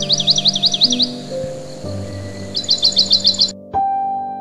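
Slow piano music with a birdsong recording laid over it. A songbird sings a run of about six quick sweeping whistles, then a faster burst of about seven notes. The birdsong and its background hiss stop abruptly about three and a half seconds in, leaving a single piano note ringing.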